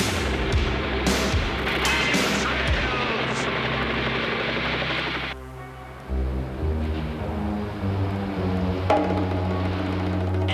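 Cartoon action sound effects: a small plane's engine noise with several sharp gunshot cracks over music. About five seconds in, the noise cuts off and only music with long held notes remains.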